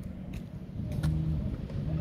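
An engine running steadily with a low, even hum and rumble, rising and falling a little, with a few faint clicks over it.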